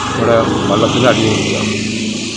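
A man speaking Malayalam in short phrases over a steady, engine-like low rumble.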